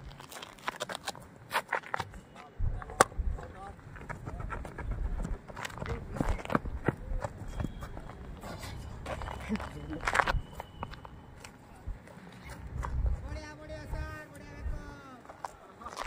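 Players' voices calling across an outdoor cricket field, with scattered sharp knocks and clicks, the loudest about three seconds in. A long drawn-out call comes near the end.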